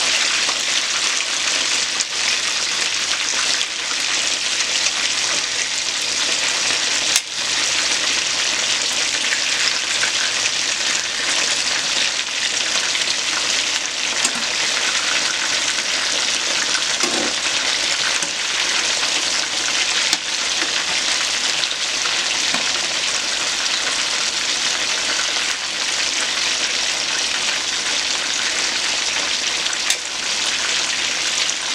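Chicken wings frying in a pan of hot oil: a steady, dense sizzle, with a couple of brief clicks.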